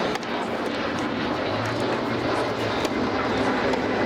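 Jet airliner passing low overhead: a steady, loud noise that covers the court. A couple of sharp knocks of a tennis ball being struck cut through it.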